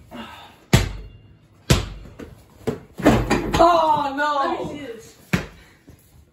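A rubber basketball hits hard surfaces in a small room with three sharp thuds: one a little under a second in, one about a second later, and one near the end. Between the second and third thuds a voice calls out for over a second.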